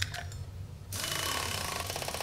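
Cartoon comic sound effect: a fast, buzzing mechanical rattle that starts suddenly about a second in.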